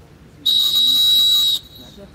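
Referee's whistle blown in one long, steady blast of about a second, starting about half a second in.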